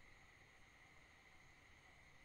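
Near silence: faint steady hiss of the recording's noise floor.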